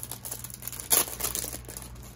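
Clear plastic packaging sleeve crinkling as it is handled around a metal cutting die, with one sharper crackle about a second in.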